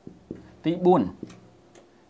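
A man says one short word in Khmer a little over half a second in. Around it come a few faint, sharp ticks from a marker tapping and stroking on a whiteboard.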